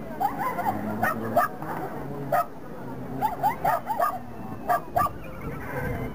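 Dog barking in short, high yips, about a dozen in quick bursts of two to four, excited barking while running an agility course.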